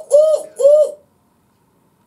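A woman hooting 'ooh' in a high voice: two short hoots in the first second, each rising then falling in pitch.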